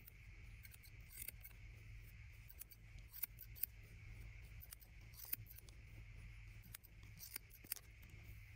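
Steel barber's scissors snipping hair over a comb in short, irregular snips, some sharper than others, over a steady low background hum.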